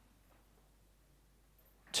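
Near silence: a pause in a man's speech, with his voice starting again at the very end.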